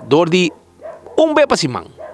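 Speech, with dogs barking in the background.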